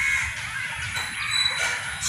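Outdoor background with birds calling, including a short high call a little past the middle.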